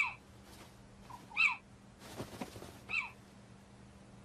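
Little owl giving three short, high calls about a second and a half apart, each dropping in pitch at its end.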